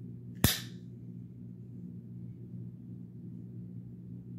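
A single sharp metallic click about half a second in, as a Cold Steel Ti-Lite folding knife's blade snaps into place in the hand.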